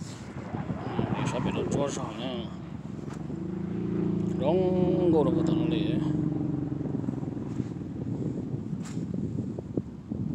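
An engine hums steadily under people talking, growing louder to a peak about halfway through and then easing off.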